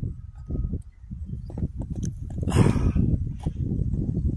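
Wind buffeting the microphone with camera handling noise: an irregular low rumble of small thumps, with a louder gust about two and a half seconds in.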